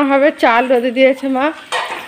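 A woman's voice in drawn-out, held tones, with a short hiss near the end.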